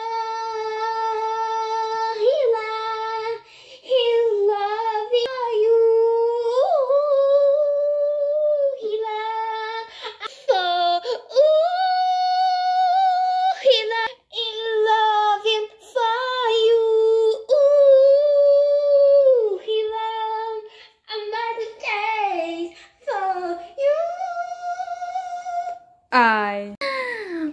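A woman singing in a high voice, mostly long held notes with gliding rises and falls in pitch and short breaks between phrases.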